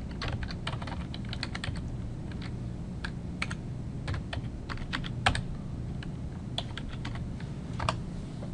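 Typing on a computer keyboard: a quick run of key clicks at first, then sparser, scattered keystrokes, one a little past the middle standing out louder.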